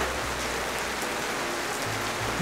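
Steady, even hiss of rain falling.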